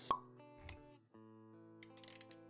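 Intro-animation sound effects over background music: a sharp pop just after the start, then a soft low thud under a second in. Held musical notes run beneath them, drop out for a moment about a second in, and come back.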